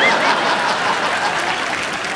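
Studio audience applauding, a dense steady clapping that eases off slightly over the two seconds, with a brief wavering high note at the very start.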